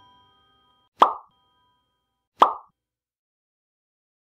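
Two short cartoon pop sound effects from an animated share/subscribe button, about a second and a half apart, each leaving a brief faint ringing tone.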